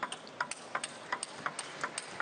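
Table tennis rally: the ball clicking sharply off the rackets and bouncing on the table in a quick, even rhythm, the clicks coming in pairs, about six a second.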